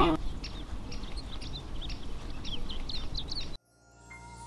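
Small birds chirping in quick, scattered calls over a steady outdoor background hiss. The sound cuts off abruptly near the end.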